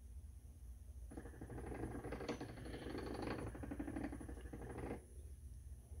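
Servo-driven rotating gearbox actuators of a Stewart motion platform running as the controller parks them: a grainy mechanical buzz that starts about a second in and stops about a second before the end.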